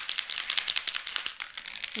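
Aerosol can of spray adhesive being shaken: the mixing ball inside clacks in a fast, even rattle, several strokes a second. This mixes the glue before spraying.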